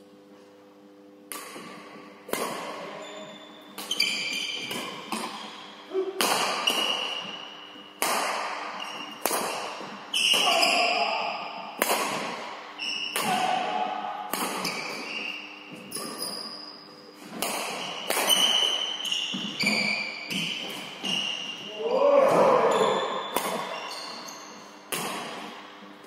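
Badminton rally in an echoing hall: sharp racket hits on the shuttlecock about once a second, with short high squeaks of sneakers on the wooden floor between them.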